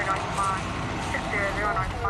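Indistinct voices over the steady low hum of an idling vehicle.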